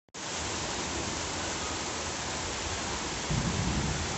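Heavy rain pouring down on the ground, a steady dense hiss, with a low rumble underneath that grows louder about three seconds in.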